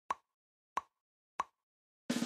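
Three short, evenly spaced pops, about two-thirds of a second apart, each dying away quickly.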